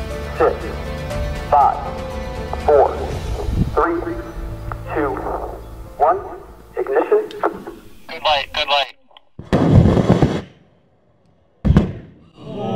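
Background music with a steady bass and swooping, voice-like tones, which cuts out. A loud burst of about a second follows, then a moment of silence, then a sharp bang near the end: the liquid rocket engine's hard start blowing apart on the test stand.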